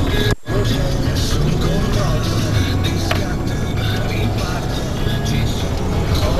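Loud music playing over the running of a car on the road, with a brief dropout in the sound about half a second in.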